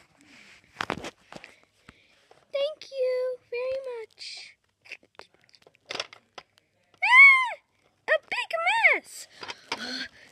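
A child's voice making wordless play noises: a held tone a few seconds in, then loud, high squeals that rise and fall near the end. There is a sharp knock about a second in.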